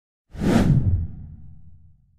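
Whoosh transition sound effect: a swish that starts about a third of a second in and fades into a low rumble over the next second and a half.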